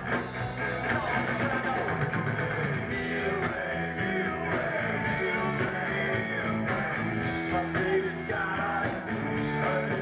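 Punk rock band playing live on electric guitars, bass and drums, with a voice singing. The cymbals are struck more densely from about three seconds in.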